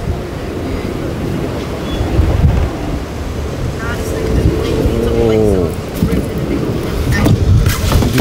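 Outdoor street noise: a steady low rumble, with a person's voice calling out briefly about five seconds in.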